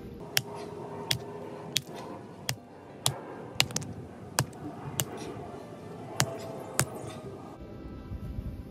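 Pommel of a Camillus Les Stroud survival knife hammering a piece of slate on a log: about a dozen sharp knocks, roughly one every two-thirds of a second, as the slate breaks into pieces.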